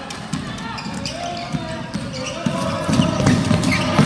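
Basketball being dribbled on a hardwood gym floor, with repeated bounces, over the murmur of crowd voices in the hall.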